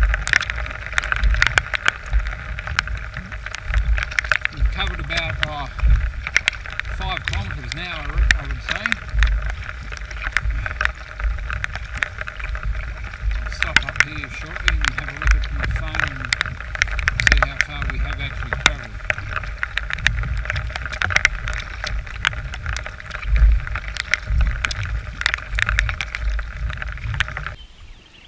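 Kayak paddling in rain: the paddle blades splash through the water stroke after stroke while drops tick sharply against the camera housing and gusts buffet the microphone.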